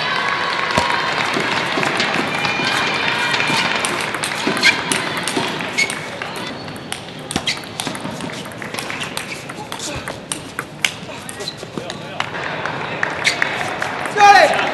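Table tennis ball ticking off bats and the table in quick, irregular taps, over a hum of voices in the hall.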